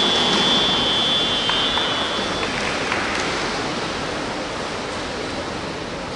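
A steady wash of water noise from swimmers splashing through butterfly strokes and a wall turn in an indoor competition pool. A high, steady tone holds for about the first two seconds.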